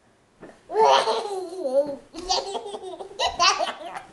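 A toddler laughing hard in repeated high-pitched bursts, starting about a second in, while being bounced up and down in a horsie-ride game.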